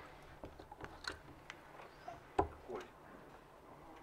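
Quiet room tone with a few soft clicks, then about two and a half seconds in a single louder short knock: a steel-tip dart striking the bristle dartboard.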